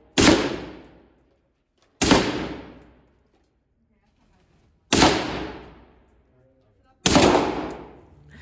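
Four single gunshots fired at an indoor shooting range, spaced about two to three seconds apart. Each echoes and fades over about a second.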